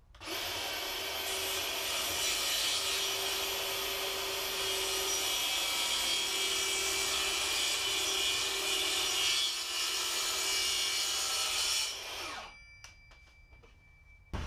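DeWalt track saw running along its guide rail, making one long, steady straight cut through a large sheet panel, then winding down as it is switched off about twelve seconds in.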